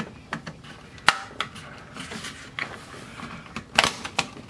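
Plastic thermostat cover being pried off its wall base with a screwdriver: a series of sharp plastic clicks and snaps, the loudest about a second in and another near the end.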